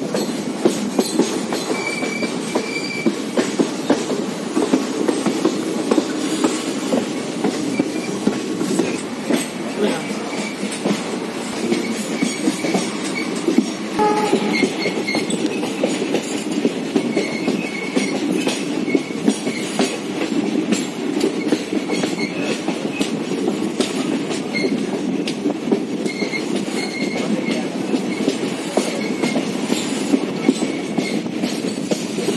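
Passenger train running on the rails, heard from an open coach doorway: a steady rumble with rapid wheel clicks, broken by repeated short, high squeals from the wheels as the train rounds a curve.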